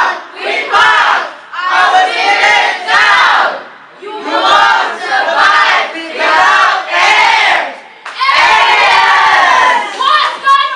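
A group of children shouting a team cheer in unison, in loud chanted phrases about one to two seconds long with short breaks between them.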